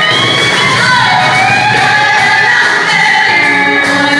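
Live blues band: a female singer holding long, bending notes over electric and acoustic guitar accompaniment.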